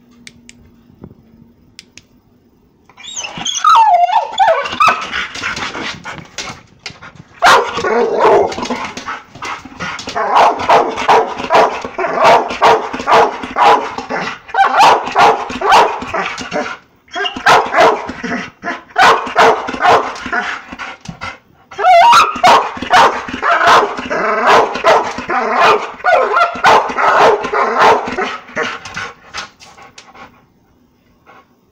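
Pit bull barking excitedly at a laser pointer's dot. A high gliding whine starts about three seconds in, then comes rapid, loud barking at about two barks a second, broken by two short pauses.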